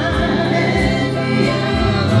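Group of voices singing a gospel worship song over a steady low bass accompaniment, with hand clapping.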